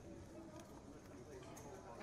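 Hushed card-room tone: faint background murmur of voices with a few faint clicks.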